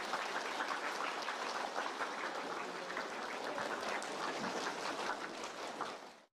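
A group of people applauding: a steady patter of many hand claps that cuts off suddenly right at the end.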